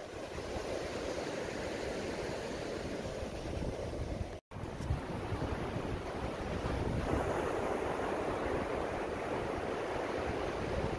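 Ocean surf breaking and washing up a sandy beach, a steady rushing wash, with wind buffeting the microphone in low rumbles. The sound drops out for an instant about halfway through at a cut.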